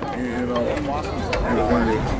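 Several people chattering at once, indistinct overlapping voices, with a low rumble underneath.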